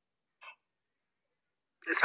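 Silence broken once, about half a second in, by a single brief catch of breath or throat sound from the speaker; speech begins near the end.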